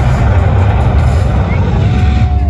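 Loud, low rumbling soundtrack played over a sound system for a fire-and-puppet show, with a faint musical drone underneath and a short gliding tone near the end.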